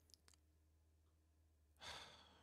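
Near silence, broken near the end by one short sighing breath from a man close to the microphone.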